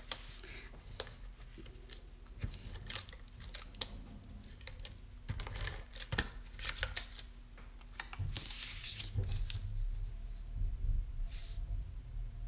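Stampin' Seal tape runner rolled along a narrow strip of designer paper to lay adhesive, with scattered clicks and paper scraping, and a longer rasp about eight and a half seconds in as the strip is handled.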